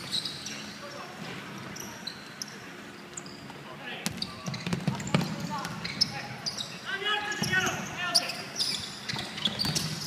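Basketball game on a wooden indoor court: the ball bouncing as it is dribbled, short high sneaker squeaks, and players calling out, with a shout about seven seconds in.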